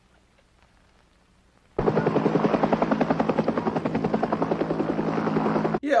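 Rapid, steady chopping of a helicopter's rotor blades, starting about two seconds in and cutting off abruptly near the end.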